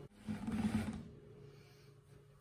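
Stick blender running in soap batter for under a second with a low buzz, then quiet room tone.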